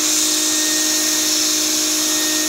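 Wet/dry shop vac running steadily with its hose nozzle held against a child's nostril, sucking out mucus: a steady motor tone over rushing air.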